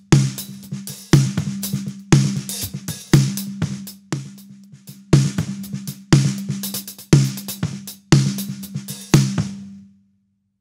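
Recorded snare drum track playing back through a channel-strip gate: a hard snare hit about once a second, each with a ringing tone under it, and quieter kit spill from the hi-hat between the hits, which the gate is being set to cut. Playback stops abruptly at the end.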